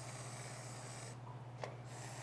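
Faint hiss of an aerosol whipped-cream can dispensing a dollop, stopping about a second in, followed by a small click, over a steady low hum.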